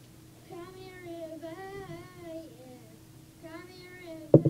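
A boy singing softly: one long sung phrase starting about half a second in, then a shorter one near the end.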